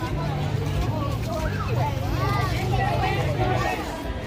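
Crowd chatter with several voices talking at once over a steady low rumble.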